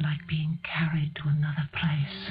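A voice whispering and speaking in short, broken syllables.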